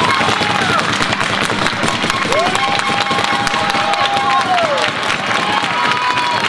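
Audience applauding and cheering, with one long drawn-out shout in the middle.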